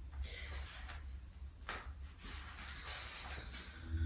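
Faint rustling and soft shuffling as a person shifts on a yoga mat and sets yoga blocks in place while folding forward, over a low steady hum.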